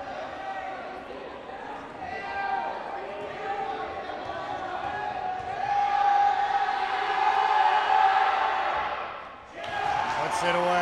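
Gym crowd yelling and shouting during a free throw, swelling to its loudest in the second half and falling away just before the end.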